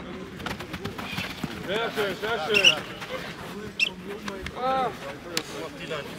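Indistinct voices of players and coaches calling and talking across the field. A couple of short high chirps and a single sharp click come partway through.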